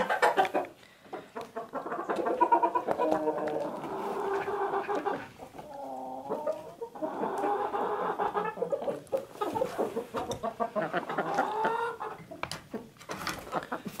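Hens clucking almost continuously as they feed on scraps, with brief pauses about a second in, around the middle and near the end.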